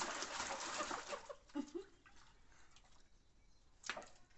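Water splashing and sloshing in a plastic bath tub as a toddler is washed by hand, stopping about a second and a half in. A brief low vocal sound follows, then a single sharp slap of water near the end.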